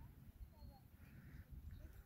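Near silence: faint outdoor ambience with a low wind rumble on the microphone and a few faint, distant bird calls.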